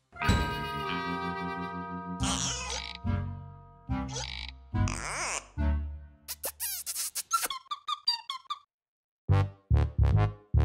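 Cartoon soundtrack music and sound effects: held electronic tones, then a string of quick wobbling bleeps and chirps, a short gap, and short evenly spaced beats near the end.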